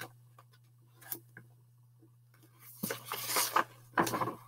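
Paper rustling and handling noise as a hardcover picture book's pages are turned and the book is moved close to the microphone, mostly in the last second or so after a few faint clicks. A steady low hum sits underneath.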